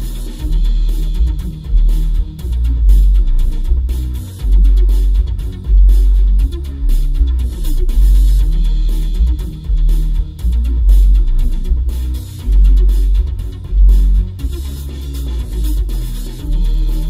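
Music with guitar and drums played through a single 6.5-inch AD2206 D2 subwoofer in a 3D-printed PLA bass tube, heard inside a car's cabin from the passenger seat. Deep bass notes dominate, pulsing on and off with the beat.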